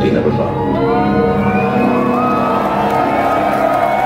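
Electronic sci-fi intro music over a concert PA: sustained low drones with wavering, gliding high tones sliding up and down, amid crowd noise in a large hall.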